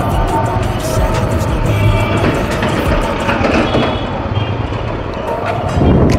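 TVS Apache motorcycle ridden slowly through town traffic: a steady engine and road rumble with wind noise, with background music laid over it.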